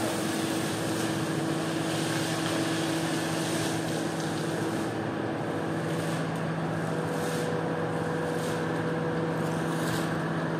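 A hose sprays and splashes water onto a soaked, foamy carpet over a steady motor hum. In the second half a squeegee scrapes across the wet carpet in irregular strokes.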